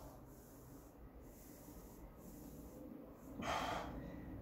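A man's short, forceful breath out through the nose, lasting about half a second near the end, while he strains in a shoulder stretch; otherwise quiet room tone.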